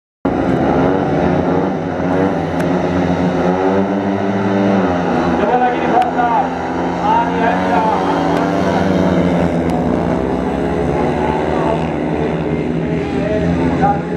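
A pack of speedway bikes, each with a 500cc single-cylinder methanol engine, revving hard on the start line and then racing away together into the first bend. The engine note climbs steeply over a couple of seconds before the bikes get away.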